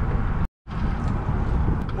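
Wind buffeting the microphone on a sailboat under way, a dense low rumble with a brief gap of silence about half a second in.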